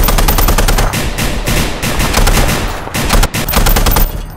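Heavy machine gun firing long, rapid automatic bursts, a dubbed gunfire sound effect, with a brief break a little after three seconds.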